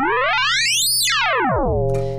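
Absynth 5 software synthesizer playing a frequency-modulated sine tone while the modulator frequency is swept up and back down. Over a steady low note, a stack of sideband partials glides steeply up to a peak about halfway through, then glides back down and settles into a steady chord-like stack near the end. Modulating this fast no longer gives one pitch moving around; it generates a huge wide range of frequencies.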